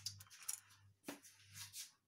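A few faint clicks and rustles as a fur piece with a large mother-of-pearl shell pendant is handled and laid down on a towel.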